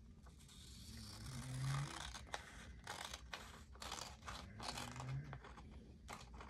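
Scissors cutting a glossy magazine page: a quiet run of crisp snips, several a second, from about two seconds in. A short low hum sounds twice, near the start and near the end.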